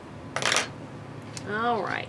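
A short handling noise about half a second in as cotton fabric pieces are moved on a cutting mat, followed near the end by a brief murmured sound from a woman's voice.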